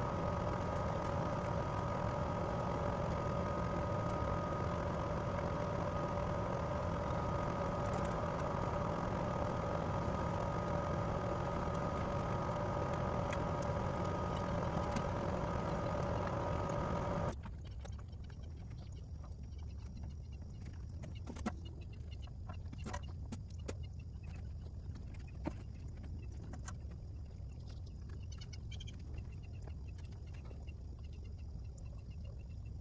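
Outdoor air-conditioning condenser unit running: a steady hum with several fixed tones over a low rumble, which cuts off suddenly a little past halfway. After that, a quieter background with scattered light clicks and taps as the metal wire grate is handled.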